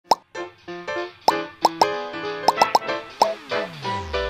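Intro jingle: bright music dotted with quick cartoon plop sounds, each a short blip that bends sharply up in pitch, with a falling pitch sweep near the end that drops into a low bass note.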